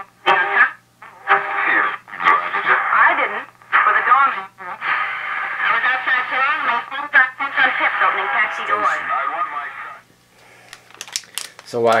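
A 1938 Silvertone Model 6125 tube radio playing a broadcast through its speaker: voices in dialogue, thin and cut off at the top as AM reception is, over a steady low hum. The programme stops about ten seconds in, leaving a few faint clicks.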